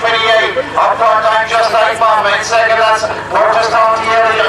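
A man's voice calling a harness race, speaking quickly and without pause.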